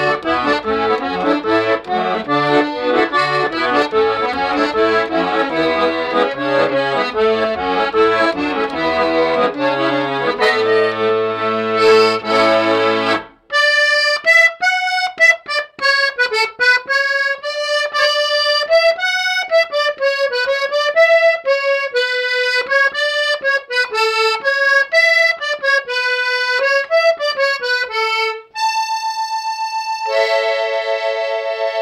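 Romashka garmon, a two-voice khromka in A major, playing a tune with bass chords under the melody. About 13 seconds in it stops briefly, then plays the melody alone without bass, and near the end holds one long note.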